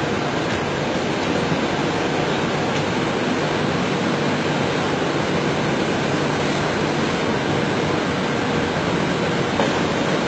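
Steady rushing noise, even from low to high pitch and unchanging in level.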